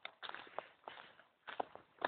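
Footsteps on a woodland dirt-and-grass path: several irregular short steps.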